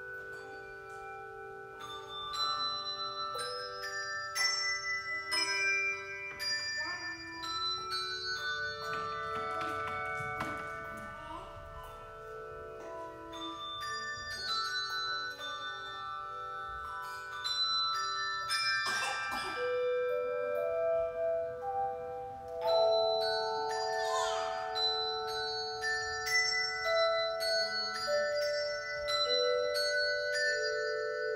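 Handbell choir playing: many bronze handbells rung in chords and running notes, each note ringing on and overlapping the next.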